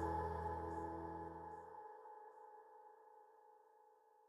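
Final sustained chord of a piano ballad backing track ringing out and fading away. The deep bass note cuts off about two seconds in, and the upper notes die down to near silence by the end.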